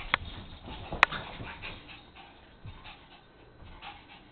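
Two small dogs play-fighting, with short dog sounds and scuffling, and a sharp click about a second in.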